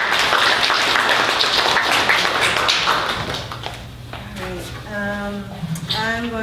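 Audience applauding with hand claps, dying away after about three and a half seconds.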